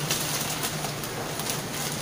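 Soft rustling and crinkling of a white plastic courier mailer bag being handled and pulled open, over a steady low hum.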